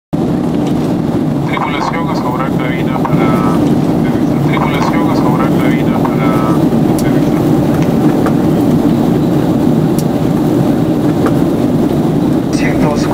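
Steady, loud cabin noise of a Boeing 767 airliner in flight, heard from inside the passenger cabin. Voices are heard faintly in the background twice in the first seven seconds.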